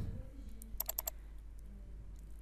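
Four quick, faint computer clicks in a row about a second in, over a low steady hum.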